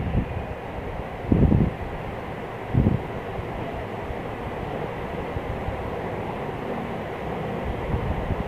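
Handling noise from plastic weaving wire and a half-woven plastic-wire basket being worked by hand. Three soft low thumps come about a second and a half apart, near the start, over a steady background rumble.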